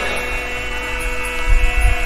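Steady electrical mains hum from the amplified sound system, holding several steady tones between the speaker's phrases, with a low rumble rising about one and a half seconds in.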